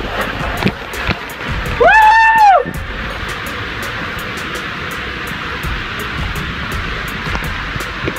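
Water rushing and a body sliding through an enclosed water-slide tube: a steady whooshing noise. About two seconds in comes one loud, held yell that rises and then falls in pitch.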